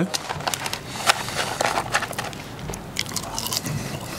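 Close-up chewing of a mouthful of French fries, with irregular small clicks and crackles from the paper fry carton being handled.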